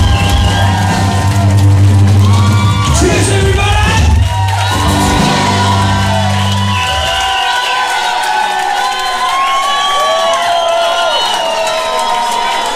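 A live acoustic rock band ends a song on a held, bass-heavy final chord that cuts off about seven seconds in, while a crowd cheers and whoops throughout. Once the music stops, the cheering and shouting take over.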